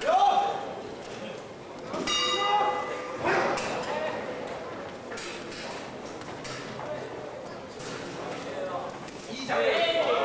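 A boxing-ring bell is struck once about two seconds in and rings on, sounding the start of the round, over voices in the hall. Crowd shouting rises sharply near the end.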